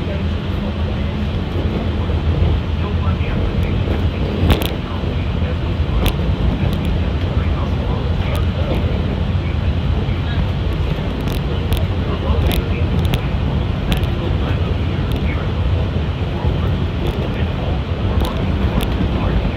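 Walt Disney World Mark VI monorail heard from inside the cabin while travelling: a steady low rumble from the running gear, with occasional sharp clicks and rattles.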